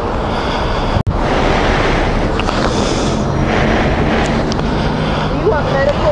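A motorcyclist breathing heavily right at his helmet-mounted microphone after being knocked down in a crash, over a steady rush of mic noise and passing traffic. The sound cuts out for an instant about a second in.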